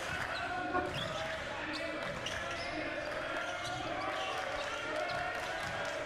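Gym ambience at a basketball game: spectators' voices in a steady murmur, with a basketball being dribbled on the hardwood court and a few faint knocks.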